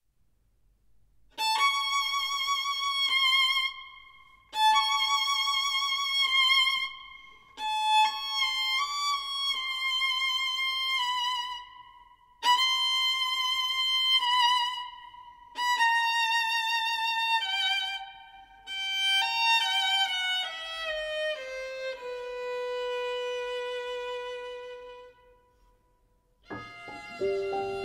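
Solo violin playing slow, high phrases with vibrato, each note held and each phrase broken off by a short pause. The last phrase steps downward to a long held lower note.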